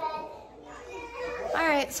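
Young children's high-pitched voices calling and chattering, with one loud rising-and-falling call near the end.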